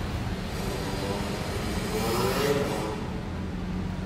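City street ambience under a stone arcade: a steady low hum of traffic engines, with passers-by's voices rising briefly about two seconds in.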